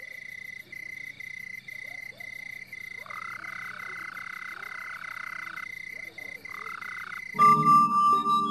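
A high chirping call in rapid, even pulses, joined from about three seconds in by a lower, steady trill that stops and returns briefly. Near the end, loud music with sustained ringing tones cuts in over it.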